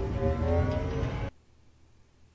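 Sustained tones of a dramatic TV score over a deep low rumble, cut off abruptly about a second in, leaving near silence.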